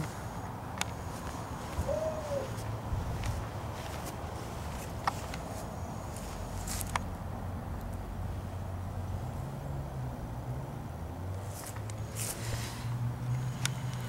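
Quiet outdoor background: a low, steady hum with a few faint, scattered clicks.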